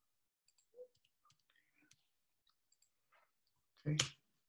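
Faint, scattered clicks of typing on a computer keyboard.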